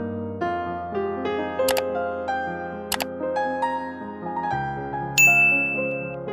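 Soft piano music, with a subscribe-button animation's sound effects over it: two sharp clicks about a second and a half apart, then a bright bell ding near the end, the loudest sound.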